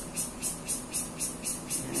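Cicadas singing in the trees: a high, buzzing call pulsing evenly at about four beats a second.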